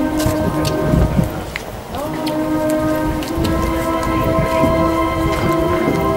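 Italian town band of brass and wind instruments playing slow held chords; the chord breaks off a little after a second in and a new one starts at about two seconds. A heavy low rumble and scattered clicks run under the music.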